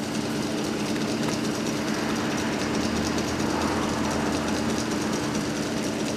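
Small electric motor running steadily on a bench test rig for a hand-lever plate friction clutch: a steady hum with a light, even mechanical clatter from the pulley, shaft and roller chain drive.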